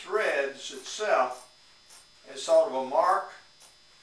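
A man's voice speaking indistinctly in two short phrases, one at the start and one near the middle; no other sound stands out.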